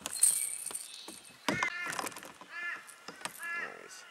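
A bird calling in three short bursts about a second apart, each a quick run of arched notes, with light clicks and knocks of handling between them.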